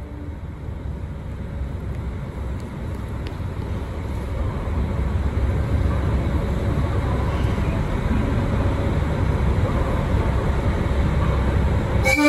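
The tail of a diesel train horn blast at the very start, then a KiHa 183 diesel railcar's engines rumbling under the station roof. The rumble builds from about four seconds in and stays loud.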